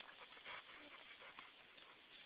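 Near silence: faint outdoor background with a few scattered soft ticks.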